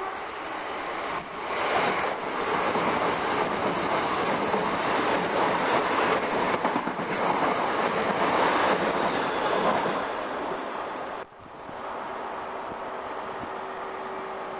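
Electric multiple-unit trains running through the station at speed close by, a loud steady rush of wheels on rail and air. About eleven seconds in, the noise drops suddenly to a quieter steady hum with a faint held tone.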